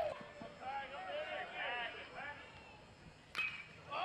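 Faint voices in the background, then about three seconds in a single sharp ping from an aluminum college baseball bat striking a pitched ball, ringing briefly.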